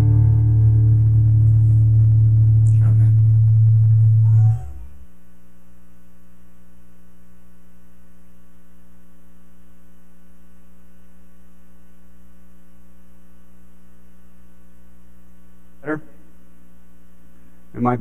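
Electrical mains hum through a sound system: loud at first, then dropping sharply to a quieter steady hum about four and a half seconds in, as the played-back video's audio cuts out.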